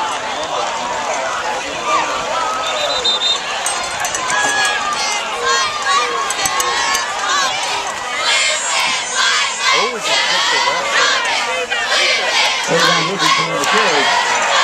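Football crowd in the stands cheering and shouting, many voices overlapping, growing louder and more excited about eight seconds in.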